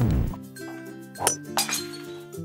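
Cartoon sound effects over light background music: a falling whistle-like glide ends in a low thud as the sledgehammer strikes the golf ball, then two quick bright clinks just past halfway.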